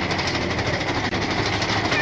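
Mine-train roller coaster running along its track, heard from on board: a steady, fast rattle of the train's wheels and cars.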